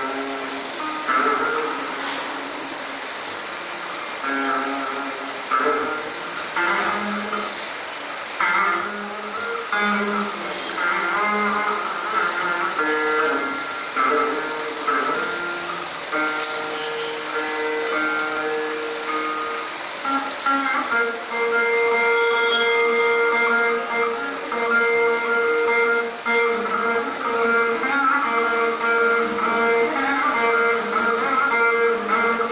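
Saraswati veena playing in Surati raga. Plucked notes slide and bend between pitches, and from about two-thirds of the way in the notes are held longer and ring steadily.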